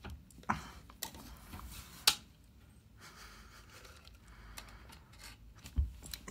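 Light scrapes and clicks of a nail file pushed under a door and rubbed against the metal threshold strip as a cat paws at it, with the sharpest click about two seconds in.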